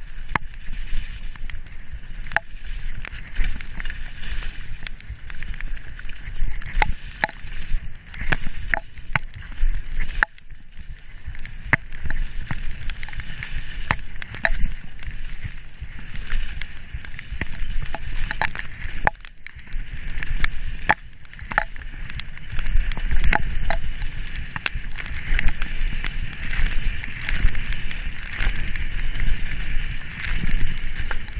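Mountain bike riding fast down a wet dirt forest trail: a continuous rumble and hiss of tyres on the ground, with frequent sharp clicks, knocks and rattles from the bike over bumps and roots, busiest and loudest in the last several seconds.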